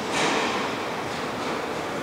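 Steady room noise, a hiss with no distinct event, briefly a little stronger in the first half-second.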